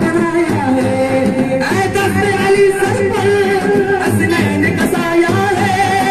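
Group of male voices singing a qawwali into microphones, with long held, slightly wavering notes.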